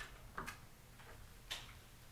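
A few faint, short clicks in a quiet room: three small ticks spread over two seconds, the one about a second and a half in the loudest.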